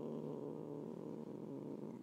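A woman's long drawn-out hesitation sound, a held "eh" that trails off into a low creaky rasp and fades away near the end.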